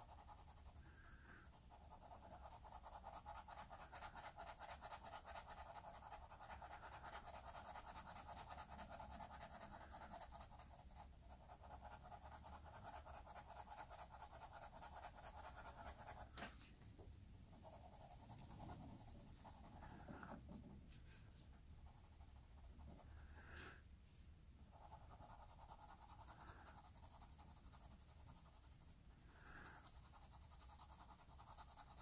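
Graphite pencil shading on drawing paper: faint, quick back-and-forth scratching strokes that run steadily, then pause briefly a few times in the second half as the pencil lifts and starts again.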